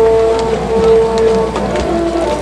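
Brass band playing a march for the teams' entrance, with long held notes.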